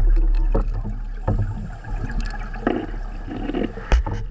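Scuba diver's exhaled bubbles gurgling and rumbling underwater, heard through the camera housing, with a few scattered knocks of gear and one sharp knock near the end.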